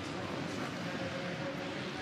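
Supercross race motorcycles, among them a Honda, running on the dirt track under an even haze of stadium noise, with a faint steady engine note in the middle.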